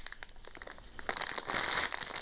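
Packaging being handled: rustling and crinkling, quieter at first and then louder with dense crackles from about a second in.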